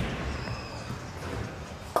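Bowling ball landing on the lane with a knock, then rolling with a low steady rumble; a sharp crash of pins begins at the very end.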